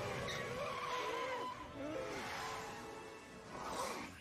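Cartoon sound effect of a small private jet landing and rolling off the runway: a steady rushing noise with skidding tyres, over background music.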